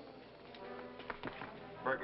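Faint steady buzz or hum, with a few soft clicks.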